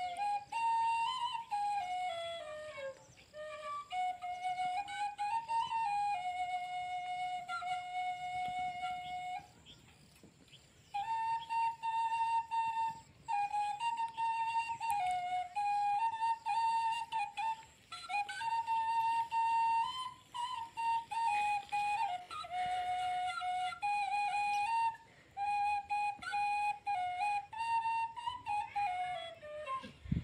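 Background music: a single flute playing a slow melody, with a short break about ten seconds in.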